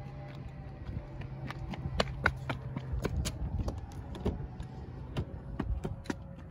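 Scattered light clicks and knocks from footsteps and handling around a parked car, over a steady low hum that weakens about halfway through.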